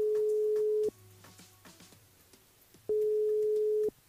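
Telephone ringback tone on an outgoing call: a steady single tone, on for about a second, off for about two, heard twice. It means the called phone is ringing and has not yet been answered.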